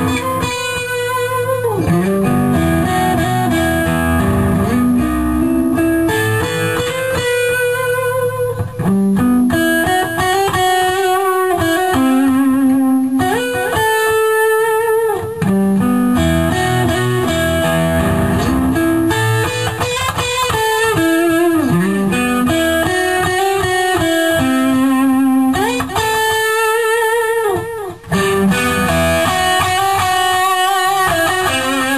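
Ibanez electric guitar played through a Cornford MK50 amp: a single-note melodic lick played over and over, its held notes shaken with vibrato. It is a riff being worked out into a song.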